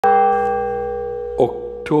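A bell struck once at the very start, its several steady tones ringing on and slowly fading. A man's voice starts speaking over the ringing near the end.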